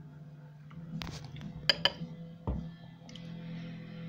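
A metal spoon clinking a few times against a bowl of porridge, then a single low thump, over a steady low hum.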